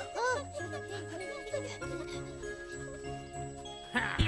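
Cartoon background score: light tinkling, bell-like tones and a few short swooping notes near the start, over a low bass line that pulses on and off.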